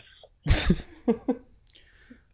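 A man laughing: a sharp burst of breath about half a second in, then a few short, quick laughs that trail off.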